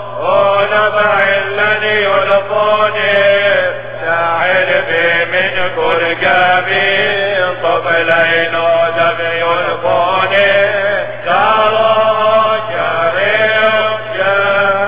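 Syriac Catholic liturgical chant sung by a man's voice, in long ornamented phrases with brief breaks between them.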